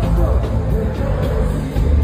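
Live afrobeats concert music through an arena PA, with heavy bass and a voice over it.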